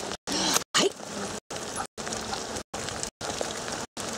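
Wheels of a dog-pulled rig rolling on wet pavement in the rain, a steady noisy hiss with a faint low hum. A brief gliding whine rises and falls about half a second in. The sound cuts out in short gaps several times a second.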